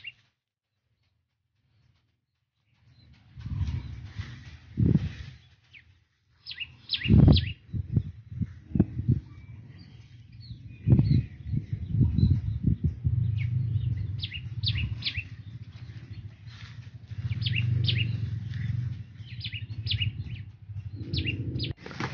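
Small birds chirping in quick clusters of short high notes, over a low rumble and a few sharp knocks or thumps. The first three seconds are silent.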